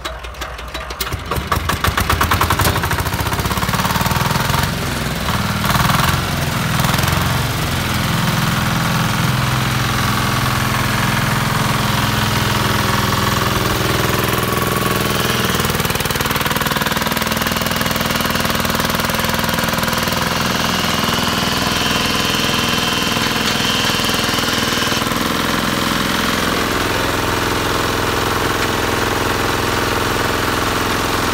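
Hand-cranked single-cylinder diesel engine of a small water well drilling rig catching within the first two seconds, its firing strokes quickening, then running loud and steady with a heavy knocking beat while the rig drives the drill rod.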